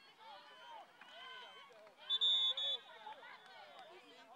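A referee's whistle blows about two seconds in: a shrill, high blast broken briefly in the middle, over the shouting and calling of many voices from the sideline.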